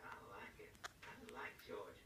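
Faint, low speech, close to a whisper, with one light click about midway.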